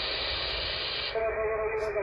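AM radio static from a KiwiSDR receiver tuned on the 11-meter band: a steady hiss that, about a second in, narrows in pitch as the receiver is retuned, with two steady whistling tones coming in and held to the end.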